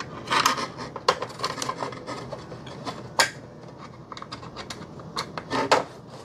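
Allen wrench turning small screws through a 3D-printed plastic bracket into a 3D printer's back panel: irregular small clicks and scrapes of metal on plastic, with a sharp click about three seconds in.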